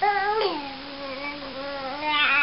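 Baby vocalizing: one long drawn-out coo that starts higher, drops in pitch about half a second in, then holds fairly steady.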